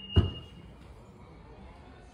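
Nissan Qashqai tailgate latch releasing with one sharp clunk a fraction of a second in, over the end of a short high electronic beep.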